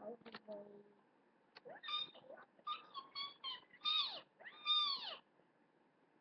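Four or five short, high-pitched meows in quick succession, each rising and then falling in pitch.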